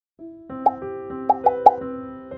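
Short intro jingle: a few held notes joined by four short, bright pops, one about two-thirds of a second in and three in quick succession near the end.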